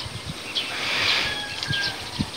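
Rural outdoor ambience: a soft rustling swells and fades around the middle, and a brief thin, steady bird call comes late on.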